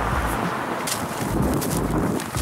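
Wind buffeting a camcorder's built-in microphone: a steady hiss with low rumbling gusts that come and go, and a couple of faint brief clicks.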